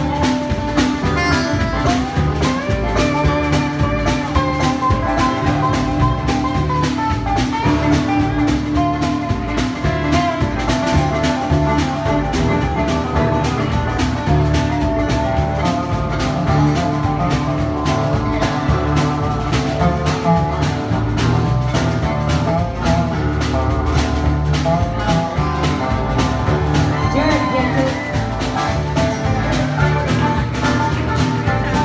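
Live acoustic band of guitar, double bass, steel guitar and fiddle playing an instrumental passage, with a gliding lead melody over a steady strummed beat and bass.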